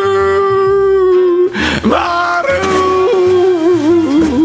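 A voice singing long, drawn-out notes over a backing track with a pulsing bass line. The first note is held for about a second and a half, and after a short break the melody goes on with held notes that waver near the end.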